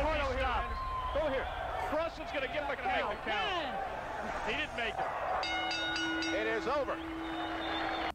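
Several voices calling out over one another, with a steady held tone joining in for the last two or three seconds.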